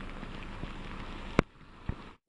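Steady hiss of rain and tyres on a wet brick street as a pickup truck drives off. About one and a half seconds in, a sharp click, after which the sound drops much quieter.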